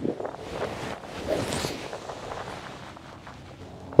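Outdoor ambience with wind noise and faint rustling; no distinct event stands out.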